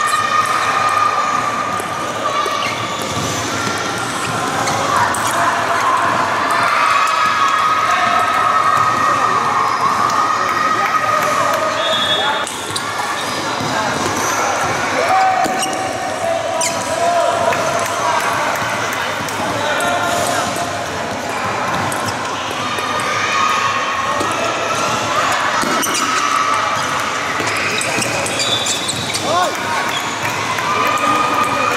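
A celluloid table tennis ball clicking back and forth in rallies, struck by rubber-faced paddles and bouncing on the table, over continuous voices and background noise in a large hall.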